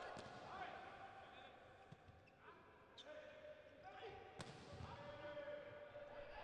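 Faint volleyball rally: sharp ball contacts about three seconds in and again just after four seconds, with players and spectators shouting and calling out.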